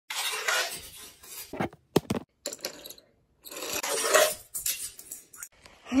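Hard plastic toy pieces clattering and rattling as they are handled close to the microphone, with a few sharp clicks about two seconds in.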